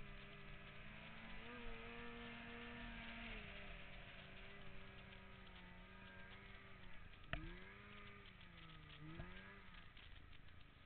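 Polaris 600 RMK snowmobile's two-stroke twin engine running under changing throttle, its pitch rising for a couple of seconds, then dropping and climbing back twice. A sharp knock sounds about seven seconds in.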